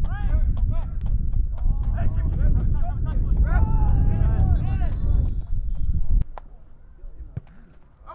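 Wind buffeting the camera microphone in a loud low rumble, with shouting voices from the field over it. The rumble cuts off abruptly about six seconds in, leaving fainter calls.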